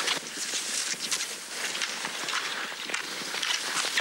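Classic cross-country skis sliding and scraping in groomed snow tracks, with ski poles planted in the snow, making a repeated, uneven swishing and crunching.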